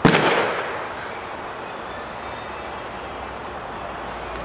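A pitched baseball smacking into its target: one sharp, loud pop right at the start, with a reverberant tail fading over about a second in the indoor bullpen.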